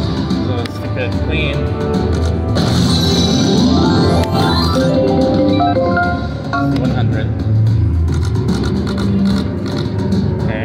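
IGT Golden Rose video slot machine playing its electronic game music and reel-spin sound effects, a run of short pitched notes, as the reels spin and stop, over a busy background with voices.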